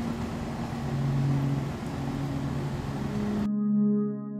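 Background music of slow, held low notes over a steady rumbling noise. The noise cuts off abruptly near the end, leaving the clean ambient music alone.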